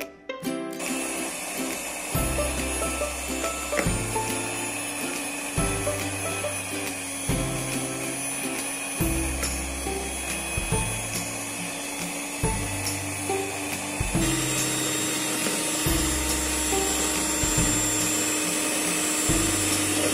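Electric hand mixer running steadily, its twin wire beaters whipping margarine in a plastic bowl. The motor starts about a second in.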